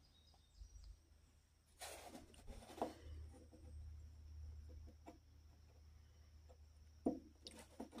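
Faint handling noises: a few light knocks and scrapes as a metal chainsaw gear is moved about by hand on a wooden bench, over a low steady hum.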